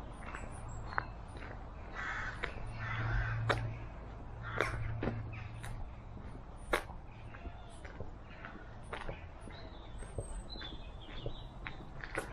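A crow cawing a few times, about two to three and a half seconds in, over irregular footsteps on a woodland path and a low hum. Small birds give thin high calls near the end.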